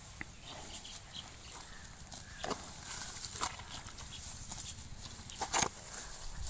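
Water buffalo grazing: scattered short crunching tears as it crops grass close to the ground, with a couple of sharper snaps a little over five seconds in.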